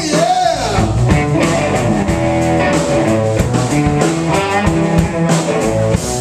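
A live blues band playing: electric guitar over bass guitar and drum kit, with a steady beat. A note bends up and back down at the very start.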